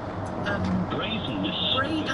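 A man's voice from a talk-radio phone-in, heard over the steady road noise of a car driving on a dual carriageway.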